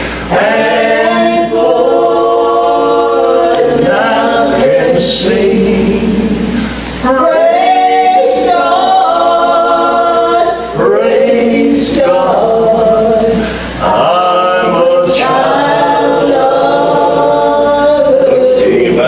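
Two women singing a gospel song together in long held notes. There are short breaks between lines about seven, eleven and fourteen seconds in.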